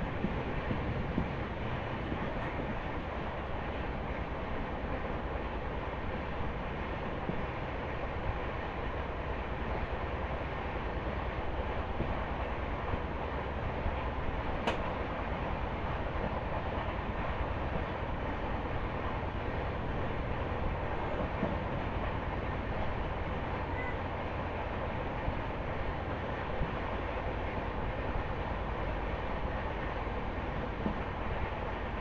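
Passenger train coach running along the track, heard from its open doorway: a steady rumble of wheels on rails with rushing air. One sharp click about halfway through.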